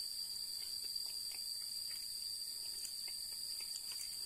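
Steady high-pitched drone of a chorus of insects, one even tone that holds without change.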